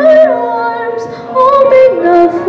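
A young woman singing slow, held notes into a microphone through a PA, with electric keyboard accompaniment. Her note slides down at the start, then rises a little past halfway.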